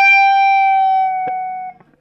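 Electric guitar (Les Paul, tuned down to E-flat) playing one high note at the 15th fret, bent up a half step and held. It sustains steadily and slowly fades, with a small pick click just past the middle, then stops shortly before the end.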